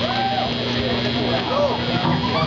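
Steady electrical hum and hiss from the band's live amplifiers and PA while the instruments are idle, with a few brief voices calling out over it.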